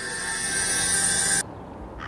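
A soundtrack riser: a hissing swell with steady tones in it grows louder and cuts off suddenly about one and a half seconds in, marking a scene transition.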